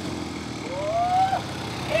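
Vintage motorcycle with sidecar, its engine running steadily as it rides up. Partway through, a voice calls out once, rising in pitch.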